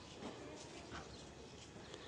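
Quiet outdoor background noise with a few faint ticks.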